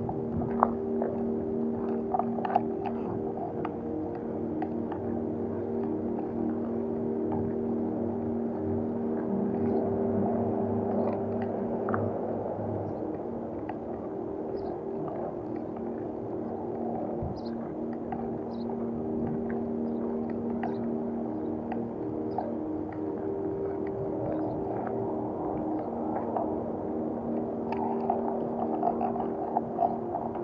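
Ambient background music of long, held droning tones, with the faint crunch of footsteps on a gravel alley and a few sharp clicks near the start and near the end.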